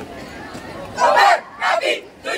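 Drill-team members shouting chant lines together, two loud shouts about a second in and near the end, over a low crowd murmur.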